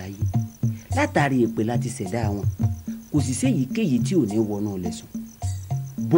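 A steady, high chirping in a rapid, even pulse, under people speaking and a low, steady hum.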